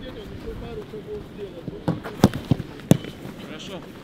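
A football being struck four times in quick succession from about halfway through, two of the thumps sharp and loud, over faint background voices.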